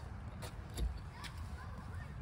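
A few faint clicks and a low knock of steel hitch parts being handled, a clevis pin and clip against the ball mount, over low background noise.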